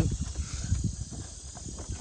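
A boat-mounted graph mount shaken hard by hand, rocking the whole boat: a run of low, irregular knocks and rumbling from the mount and hull.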